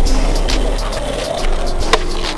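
Skateboard wheels rolling on pavement, with a sharp clack from the board just before the end.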